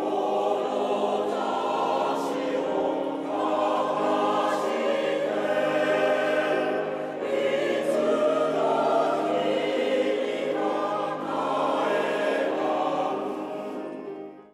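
A mixed choir of women's and men's voices singing together in harmony, with long held notes.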